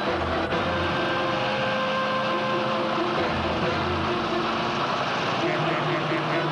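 Loud rushing road noise of a skateboard rolling fast down asphalt, with a car close behind, over the soundtrack music. The music thins out while the noise lasts and comes back near the end.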